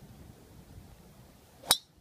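Golf driver striking a teed ball on a tee shot: one sharp, loud crack near the end, with a brief ringing tail.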